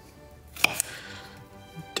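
Kitchen knife chopping a red bell pepper on a cutting board: two sharp knocks in quick succession a little over half a second in, and another near the end, over background music.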